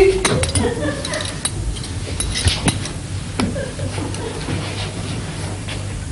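Serving cutlery clinking and scraping against a platter and china plate as food is served at the table: scattered light clicks and clinks.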